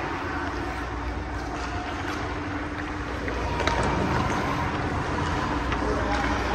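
Ice rink ambience: skates scraping and gliding on the ice over a steady machinery hum, with a couple of light taps, one past the middle and one near the end.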